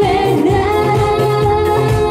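Live pop performance: female voices singing into microphones over a backing track through a PA, holding one long note over a steady bass beat.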